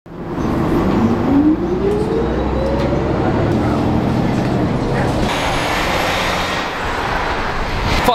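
City bus running, heard from inside the cabin: a steady low engine rumble with a whine that climbs in pitch over the first few seconds. About five seconds in, the sound turns brighter and more hissy.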